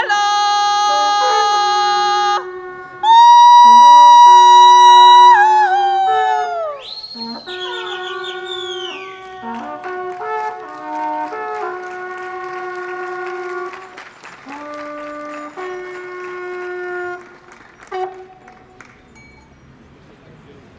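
Two trombitas, the long wooden horns of the Polish highlanders, playing together: one holds a steady low note while the other sounds long higher calls, several ending in a downward slide. The loudest call comes a few seconds in, and the playing dies away a few seconds before the end.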